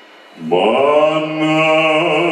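A man's solo singing voice comes in about half a second in, scooping briefly up onto one long, loud held note, sung into a microphone. Before it there is only a faint dying tail of sound.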